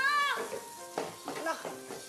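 Food sizzling in a frying pan, with a loud vocal cry at the start and a short spoken word later on.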